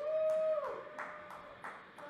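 A person whooping: a held call that drops in pitch at its end, with a weaker second call. Scattered hand claps sound through it.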